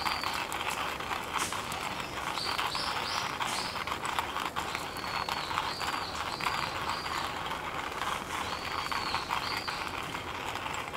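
Wood campfire burning, crackling steadily with many small pops. Runs of two to four short high chirps sound over it several times.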